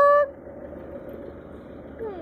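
The held last syllable of a spoken word stops about a quarter second in. After it comes a steady, low background noise with no distinct events.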